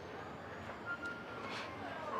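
Faint steady outdoor background noise, with a short high beep about a second in.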